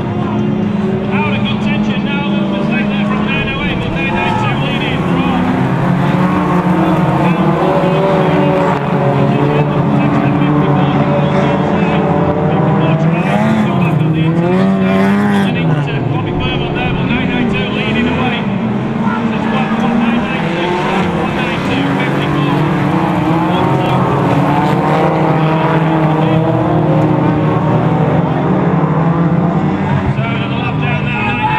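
Engines of a pack of hot rod racing cars running around a shale oval, several engine notes overlapping and rising and falling as the drivers rev and lift.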